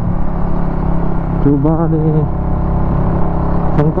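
Suzuki Raider 150 Fi single-cylinder motorcycle engine running steadily at cruising speed while being ridden.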